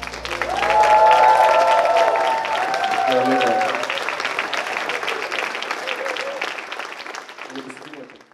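Audience applauding, with a few voices calling out over the clapping in the first few seconds. The applause is loudest about a second in and then slowly dies away.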